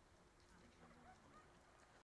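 Near silence: faint background ambience with a few faint, brief high sounds.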